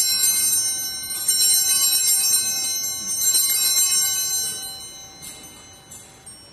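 Altar bells, a cluster of small handbells, rung at the elevation of the consecrated host: bright, high ringing shaken in bursts, renewed about a second in and again about three seconds in, then fading away, with a few faint short rings near the end.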